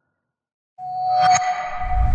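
Silence, then under a second in an intro music cue begins: a held ringing tone with a bright hit a moment later and a low swell building beneath it.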